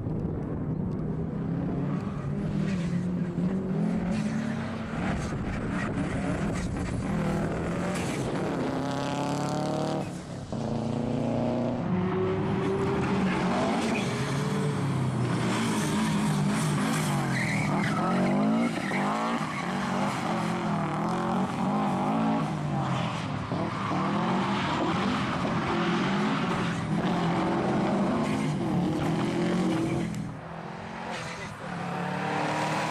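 Rally car engine revving hard as the car accelerates and changes gear, its pitch repeatedly climbing and dropping, with a brief drop in sound about ten seconds in.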